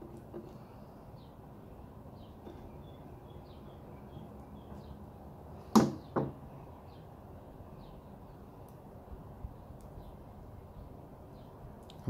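Pruning secateurs handled at a wooden table: a single sharp clack about six seconds in, with a lighter knock just after, over faint intermittent bird chirps.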